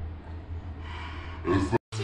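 A man's heavy, audible breath through the nose or mouth about a second and a half in, over a steady low room hum; the sound cuts off abruptly to silence just before the end.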